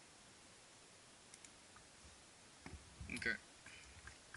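A few faint, scattered clicks at a computer, spaced irregularly, followed by a brief spoken "okay" near the end.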